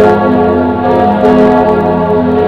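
Church bells pealing, mixed with music.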